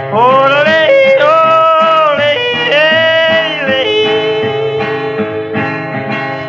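A man's blue yodel over steadily strummed acoustic guitar. The voice leaps up and breaks between chest voice and falsetto in a few swooping phrases, then settles onto a long held lower note for the last couple of seconds.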